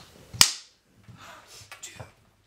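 A film clapperboard snapped shut once: a single sharp clap about half a second in, with a short echo after it, marking the start of a take.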